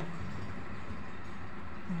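Low, steady background noise with no distinct event, and a person's short closed-mouth hum, "mm", right at the end.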